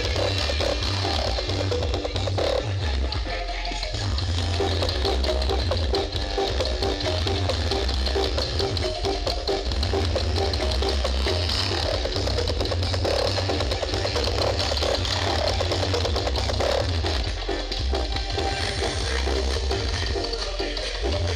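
Dance music played at high volume through a giant outdoor sound-system rig (an East Javanese 'sound horeg' stack), with heavy bass.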